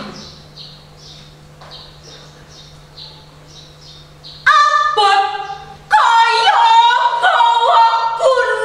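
A woman's voice reciting Javanese poetry in a drawn-out, chanted delivery, with long held and sliding notes. It sets in loudly about halfway through, after a quieter stretch.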